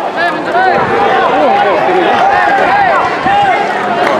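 A crowd of spectators shouting and calling out together, many voices overlapping, as a bull race gets under way.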